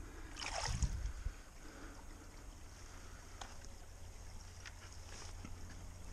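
Hands splashing and sloshing in shallow creek water about half a second in, followed by a low steady rumble with a few faint clicks.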